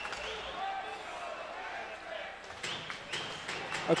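Faint ice-hockey arena ambience during live play: distant crowd voices and the sounds of the game on the ice.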